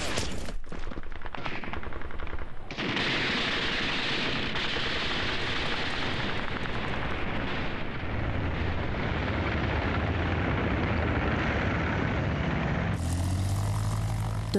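Battle sound effects over archive war footage: a dense rattle of rapid machine-gun fire for the first couple of seconds, then a continuous din of gunfire and noise. A low engine drone joins about eight seconds in.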